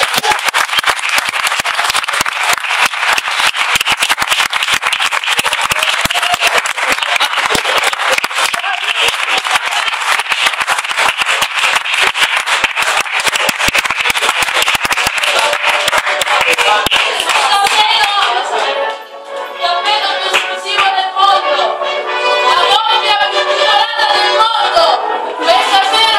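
Crowd applauding, many hands clapping steadily. Near the end the clapping dies away and music with voices comes through.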